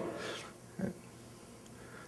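A pause in a man's speech at a lectern: the end of his last word fades into faint room tone, with one short, quiet sound from his voice or breath a little under a second in.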